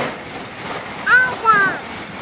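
Title-card sound effect: a rushing, hissy noise that swells and fades, with a short two-syllable voice-like call falling in pitch about a second in.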